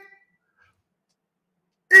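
Near silence: a dead-quiet gap between spoken lines, with the end of a word fading at the very start and a man's voice starting again at the very end.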